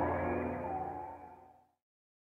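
Closing sustained chord of a hip-hop song's outro, fading out and ending about a second and a half in.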